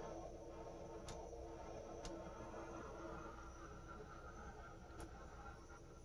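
Faint steady hiss of a small handheld butane torch flame, with a few faint ticks.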